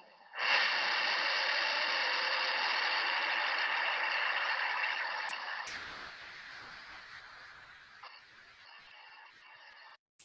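XRS-2200 linear aerospike rocket engine test-firing: a loud, steady rushing roar of exhaust that sets in just after ignition, then weakens from about five seconds in to a fainter rumble.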